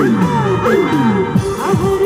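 Amplified live band music over a stage PA, with a held steady note and a string of quick falling pitch glides in the low notes.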